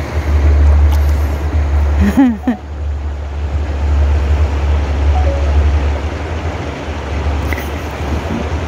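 Wind buffeting the microphone outdoors: a steady low rumble with a hiss over it. A short laugh comes about two seconds in.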